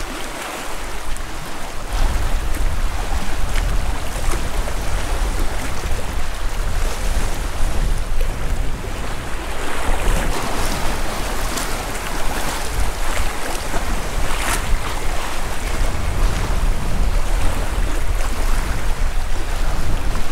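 Sea surf washing against shore rocks, a steady rushing noise, with wind buffeting the microphone in a low rumble from about two seconds in.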